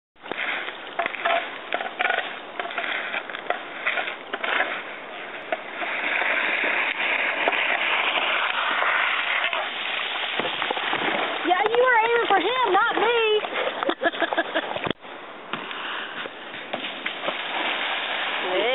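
Plastic whitewater kayak sliding down a concrete boat ramp with a crackling, scraping rattle of hull on concrete, then a long splash as it drops into the river. Midway a voice whoops, and a sharp knock comes near the end.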